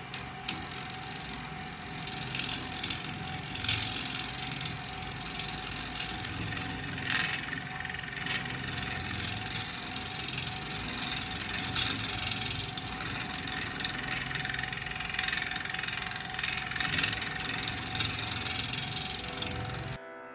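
Wood lathe running with a turning tool cutting into a spinning blank of resin-stabilized wood: a steady motor hum under the scraping hiss of the cut, which swells and eases as the tool bites, with a few sharper moments about 4 and 7 seconds in.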